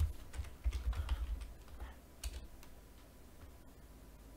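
Typing on a computer keyboard: a quick run of keystrokes over the first two seconds or so, then a pause.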